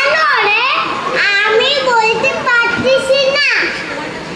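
Children's voices speaking stage dialogue, high-pitched and animated, stopping about three and a half seconds in.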